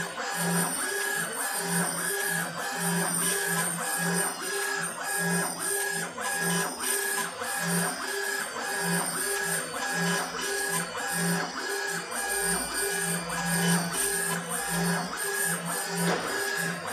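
Laser engraving machine raster-engraving a photo into granite: the motors driving its head whine in pitched, evenly repeating strokes, a few each second, as the head sweeps back and forth.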